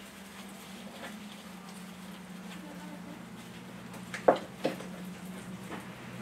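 Faint rustling and small clicks of an artificial Christmas wreath's branches and ornaments being handled as a bird ornament is fixed onto it, over a steady low hum.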